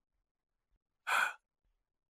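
A single short breath, a quick intake of air, about a second in; otherwise silence.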